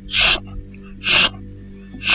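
Three short swishes about a second apart, a scratchy 'shrrit' sweeping sound like a coconut-rib stick broom brushed across a roof, over a low steady music drone.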